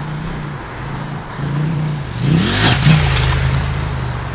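Husqvarna Norden 901's 889 cc parallel-twin engine running as the bike is ridden on a dirt track, its pitch wavering with the throttle. It revs up louder a little past halfway.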